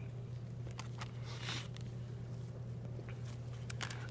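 Faint handling sounds of gloved hands opening a preserved pig heart, already sliced in two, and laying the halves on a dissection tray: a few soft clicks and rustles over a steady low hum.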